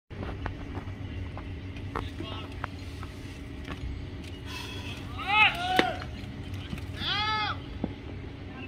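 A bat hits a baseball with a single sharp crack a little over halfway through. Spectators shout around it, their loud calls rising and falling in pitch, over a low murmur of voices at the ballpark.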